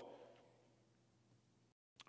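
Near silence: a pause in speech with only faint room tone, the tail of the previous words dying away in the first moment.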